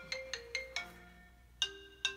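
Mobile phone ringing for an incoming call, with a melodic marimba-style ringtone: a quick run of struck notes, a short pause, then the phrase starting again near the end.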